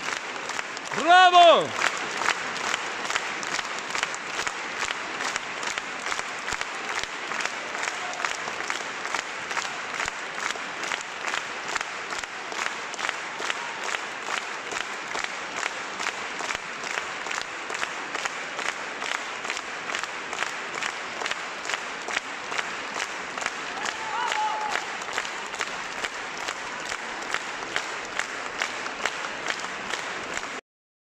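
Concert-hall audience applauding with dense, steady clapping. About a second in, one voice gives a single loud shout that falls in pitch, and a fainter short call comes near the end.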